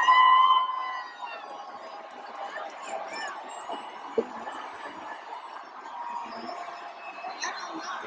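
Arena concert crowd cheering and shouting, opening with one loud held whoop, then a steady hubbub of voices and scattered whistles. No music plays under it: the stage sound has cut out.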